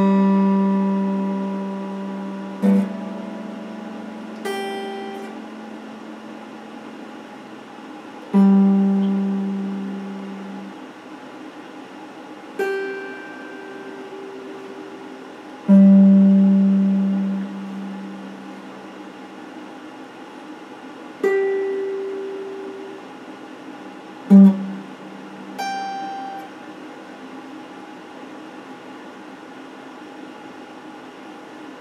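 Electric guitar played slowly: about nine single notes and small chords plucked a few seconds apart, each ringing out and fading over a second or two.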